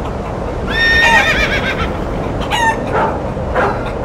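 An animal call: a high, wavering cry about a second in that falls in pitch, and a shorter second cry about two and a half seconds in, over a steady rushing noise.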